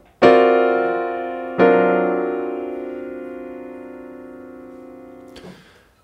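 Piano playing a D altered dominant chord (D7alt) voiced with F♯ and C in the left hand under a B-flat major triad in the right. The chord is struck twice, about a second and a half apart, and left to ring and slowly die away.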